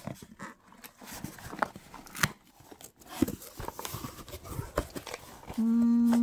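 Packing tape being torn and cardboard box flaps pulled open by hand: scattered crackles, scrapes and clicks. Near the end comes a short steady humming tone.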